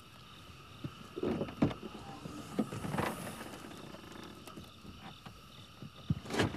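A few soft knocks and rustles, the sharpest about one and a half seconds in and another around three seconds, over a faint steady background hiss.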